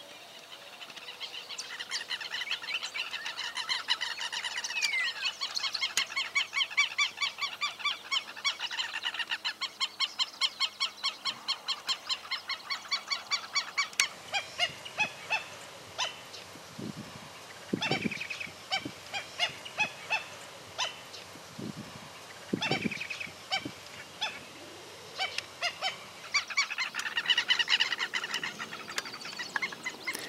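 Black-necked stilts calling: sharp, yapping notes repeated several times a second in long runs. The calls are dense in the first half, thinner and more scattered after a cut a little before halfway, and dense again near the end.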